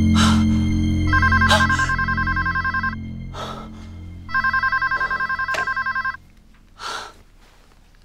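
Telephone ringing twice with a rapid electronic trilling ring, each ring about two seconds long, over low dramatic background music that stops about six seconds in.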